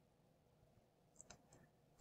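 Near silence, with two faint clicks a little over a second in.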